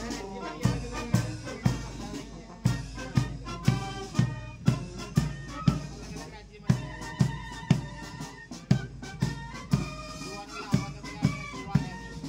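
Marching police brass band playing: brass instruments hold sustained notes over a steady bass drum beat of about two strokes a second.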